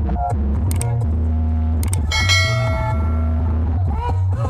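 Loud, bass-heavy music from a large carnival sound system. A bright bell ding from a subscribe-button animation's sound effect is laid over it about two seconds in and rings out for about a second.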